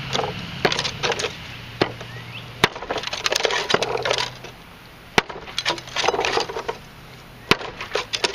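Dry, brittle hardwood branches crackling and rattling against each other as they are handled on a wooden block. Three sharp, loud cracks stand out, the snap or strike of the dry wood.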